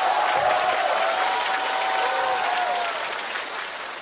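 Studio audience applauding with laughter in the crowd; the clapping eases off near the end.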